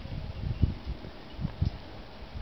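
Low, uneven rumbling and soft thumps of wind buffeting the microphone, with no speech.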